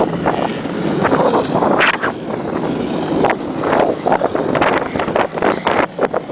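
The small wheels of a cart under a cardboard box rolling fast over asphalt, a loud steady rumble, with wind buffeting the microphone.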